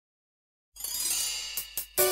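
Song intro: silence, then about three-quarters of a second in a cymbal shimmer swells in, with two short sharp strokes near the end, leading into the music.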